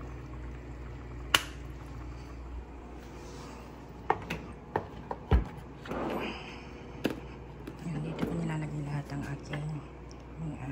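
Kitchen handling sounds over a steady low hum: a sharp click about a second in, a few knocks around four to five seconds, then a wooden spice drawer sliding open around six seconds. A low voice murmurs near the end.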